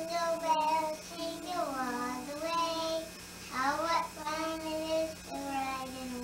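A young girl singing a song unaccompanied, a string of held notes with slides up and down between them.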